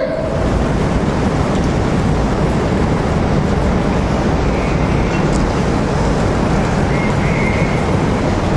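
Loud, steady rushing noise, heaviest in the low end, with a faint high tone heard briefly about five seconds in and again about seven seconds in.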